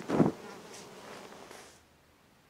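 Bees buzzing around, with a soft thump as a heavy jacket is dropped onto the grass just after the start. The buzzing cuts off suddenly near the end.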